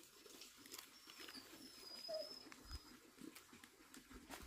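Quiet: faint rustles and light clicks of banana leaves and stalk being handled and cut with a knife, with a thin high whistle lasting about two seconds in the middle.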